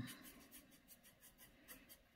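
Faint scratchy strokes of a paintbrush laying acrylic paint onto a gessoed canvas board, a quick series of short strokes.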